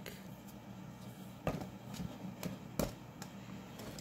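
A few soft, short knocks and clicks as a sealed clear plant container is picked up and handled, over a faint steady low hum.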